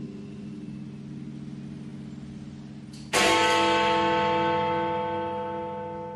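A bell tolling slowly. The last stroke is dying away, then a new stroke about three seconds in rings out and fades gradually.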